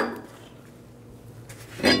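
Cast-iron brake rotor clinking against the hub and wheel studs as it is handled: a sharp metallic click at the start and a second ringing clink near the end as it is taken hold of to be turned around.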